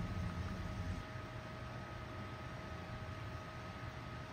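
Quiet background: a faint steady hiss with a thin, steady hum tone running through it, and no distinct sound event.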